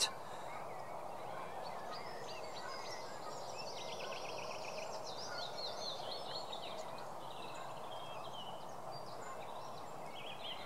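Small birds singing in the background, with scattered high chirps and a rapid trill about four seconds in, over steady outdoor background noise.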